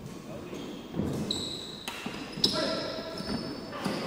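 A badminton rally on a wooden court: sharp racket-on-shuttlecock hits, the loudest about two and a half seconds in, with high sneaker squeaks on the varnished floor in between.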